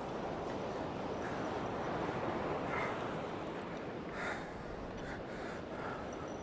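Surf breaking and washing up a sandy beach, a steady rushing wash of waves, with low wind rumble on the microphone.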